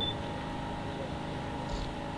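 A pause in a man's reading, leaving a faint, steady hum with no change in pitch.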